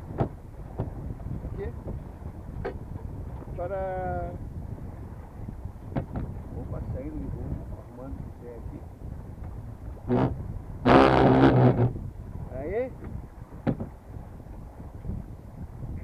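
Steady wind and water noise aboard a small sailboat while gear is handled in the cockpit, with a few short knocks and brief vocal sounds; the loudest is a strained vocal noise from about ten to twelve seconds in.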